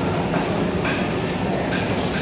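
Steady background noise of a covered wet market hall: a constant low rumble without clear voices.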